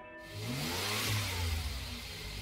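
A car driving past under acceleration: a low engine hum under a rush of noise that swells and fades, with a faint tone rising and then falling about a second in.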